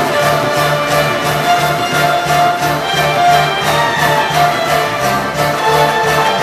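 Live folk band playing an instrumental passage: fiddles carry the tune over a bass line pulsing about three notes a second.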